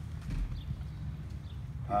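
A pause in outdoor speech: a steady low rumble with a soft low thump about half a second in.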